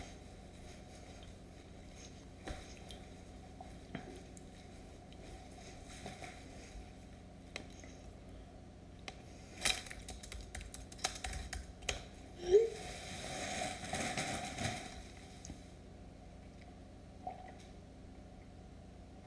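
Quiet room with scattered small clicks and handling noises, thickening into a cluster of clicks a little past halfway and a rustle of about two seconds soon after.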